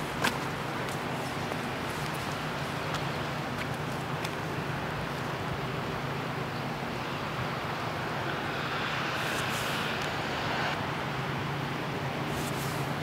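Steady rush of a swollen river in flood, with a faint low hum underneath; the rush turns brighter about seven seconds in and drops back abruptly before the end.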